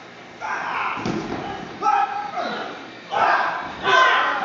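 Performers yelling and grunting in a staged fight, with thuds of feet and bodies hitting gym mats and a foam vault block. A loud burst comes near the end.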